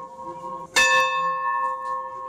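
A bell struck once about three-quarters of a second in. It rings on with long, steady tones over the fading ring of the stroke before.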